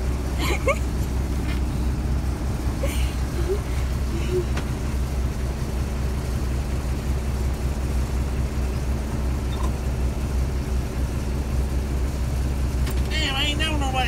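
Semi truck's diesel engine idling steadily, a low even hum.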